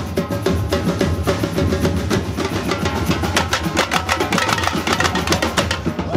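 Street drum band of bass drums and snare drums playing together in a fast, steady rhythm, with a deep, continuous low drum beat under the snare strokes.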